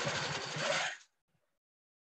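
Handi Quilter quilting machine stitching, a fast steady run of needle strokes that stops suddenly about a second in.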